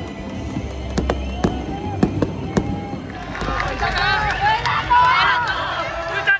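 Fireworks bursting overhead: several sharp bangs with a low rumble in the first three seconds. From about three seconds in, singing voices and music rise over them and take over.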